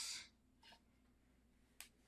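Near silence with a single short, sharp click near the end, from a camera lens being handled.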